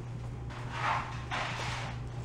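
Table salt pouring from a canister's spout into a metal measuring spoon in two short pours, each under a second, with a brief break between.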